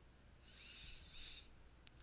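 Near silence, with one faint, high, wavering whistle from about half a second in, lasting about a second.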